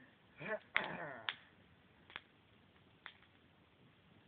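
A person's brief, soft vocal sounds in the first second or so, short pitch-sliding utterances rather than words, followed by two faint clicks.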